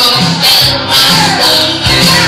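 Live piano-bar rock music: piano played to a steady beat of about two pulses a second, with a bright, rattling percussion hit on each pulse.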